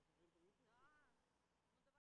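Near silence: the soundtrack has faded out.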